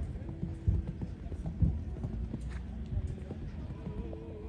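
Hooves of a cantering horse on arena sand: dull thuds of its strides, roughly one a second.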